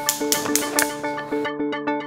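Background music: sustained melodic tones over a quick, regular ticking rhythm. A hiss beneath it cuts out about three-quarters of the way through.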